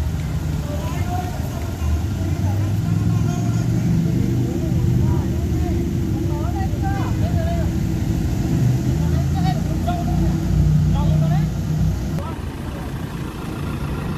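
Ford Transit minibus engine idling with a steady low rumble, while people talk faintly in the background.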